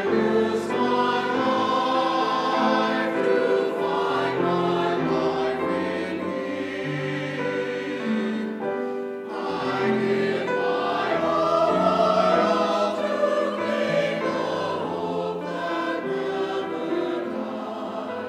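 Mixed church choir singing in parts with grand piano accompaniment.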